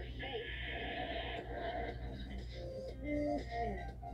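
Music with snatches of dialogue from a television channel promo, playing through a TV speaker over a steady low hum.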